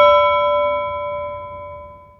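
A single struck bell-like chime ringing out, its clear, several-toned note fading steadily away until it dies out just at the end.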